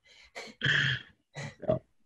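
A man chuckling in a few short bursts.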